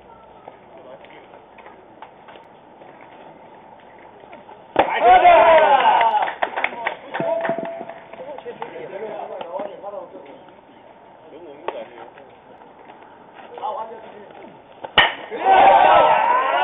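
Baseball players and bench voices shouting on an open field, with a sudden loud burst of shouting about five seconds in that trails off into scattered calls. About a second before the end, a sharp crack of a bat hitting the ball is followed at once by another burst of shouting.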